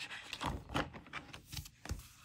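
A translucent dashboard sheet is handled and fitted onto a disc-bound planner's discs, making light rustling and about half a dozen soft clicks and taps.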